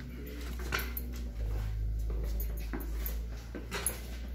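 Steady low electrical hum in a switchgear room, growing stronger about a second and a half in, with a few soft knocks and faint short whining tones.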